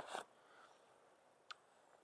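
Near silence, with one faint, short click about a second and a half in.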